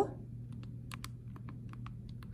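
Keys of a TI-Nspire CX graphing calculator being pressed: about ten light, separate clicks as negative eight divided by five is keyed in.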